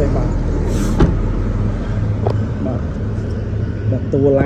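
Toyota Camry engine idling with a steady low drone, with one sharp click about a second in.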